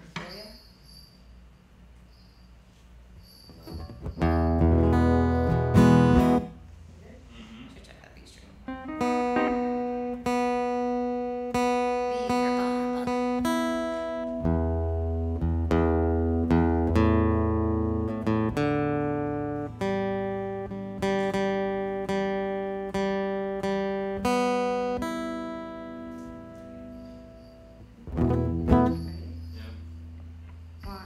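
Pedal steel guitar playing a slow line of single sustained notes, each picked and fading, some sliding in pitch, over most of the stretch. Acoustic guitar chords strummed briefly about four seconds in and again near the end.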